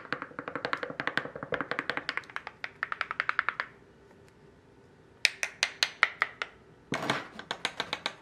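Wooden stirring stick clicking rapidly against the inside of a glass mug while stirring a drink, about seven taps a second. It stops for over a second, then resumes, with a louder knock about seven seconds in.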